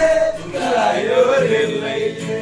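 A group of young men singing together to an acoustic guitar. A long held note breaks off just after the start, the voices wander through a short phrase, and then settle on another held note.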